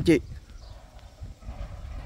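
Footsteps of someone walking on a dirt road over a low, uneven wind rumble on the phone microphone.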